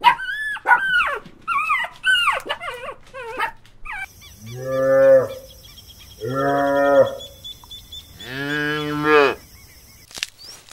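Monkeys giving a quick run of short, high squealing calls for about four seconds, then cattle mooing: three long, low moos of about a second each, with a faint steady high whine behind them.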